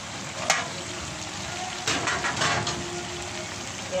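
Pan of carrots, potatoes and green beans sizzling steadily on the stove, with a sharp click about half a second in and a few knocks near the middle.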